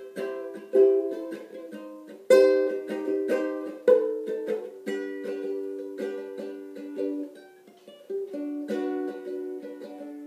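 Solo ukulele played without singing: plucked chords and single notes that ring and die away, with sharp accented plucks about a second in, just over two seconds in and near four seconds in.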